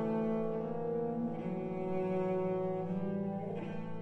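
Slow instrumental music: sustained chords on low bowed strings such as cello and double bass, the chord changing about a second and a half in and again near three seconds.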